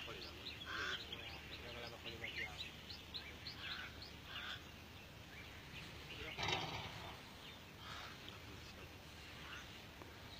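Birds chirping over and over in short high calls, with faint distant voices; a brief louder sound breaks in about six and a half seconds in.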